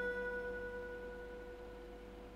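Clean electric guitar through an amplifier: a plucked high note, with fainter lower notes beneath, left ringing and slowly fading away.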